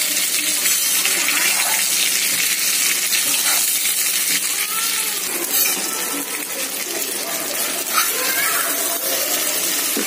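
Stuffed small brinjals frying in hot oil in a kadhai: a steady sizzle, with a couple of sharp clicks about halfway through and near the end.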